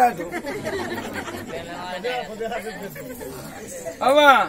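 Several people talking at once, indistinct overlapping chatter with no single voice standing out.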